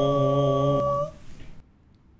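Several layered takes of one man's voice, without accompaniment, holding a sustained chord, which breaks off about a second in and leaves near quiet.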